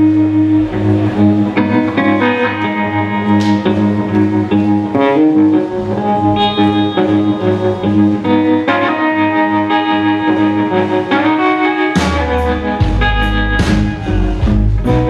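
Live blues band playing an instrumental passage: electric guitar lines over a steady low note. The drum kit comes in with cymbal crashes and kick drum near the end.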